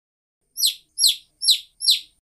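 A bird-like chirp sound effect, repeated four times at an even pace of about two a second, each chirp short and falling in pitch.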